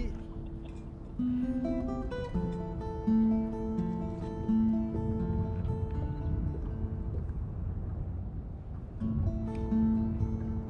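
Background music led by a guitar, a melody of held notes changing every half second or so.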